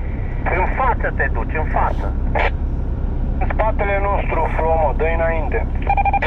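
People talking over the steady low drone of an SUV's engine and running gear, heard from inside the cabin while driving.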